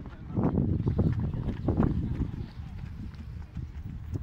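Footsteps of several runners on a paved path, an irregular patter of strikes over a steady low rumble.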